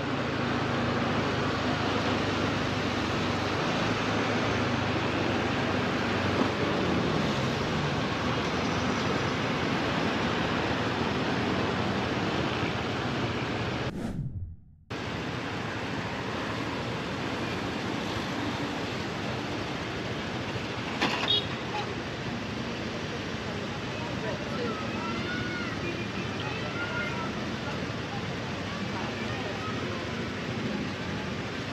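Steady rushing noise of wind on an action camera's microphone and road traffic during a motorbike ride. The sound cuts out for about a second near the middle, then the steady noise resumes, with a brief clatter about two-thirds of the way in.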